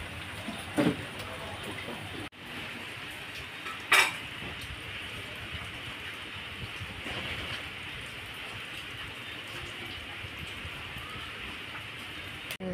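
Steady hiss of rain, with a few brief knocks, the loudest about four seconds in.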